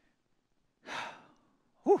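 A man's long breathy exhale, close on a headset microphone, followed near the end by a short voiced "whew".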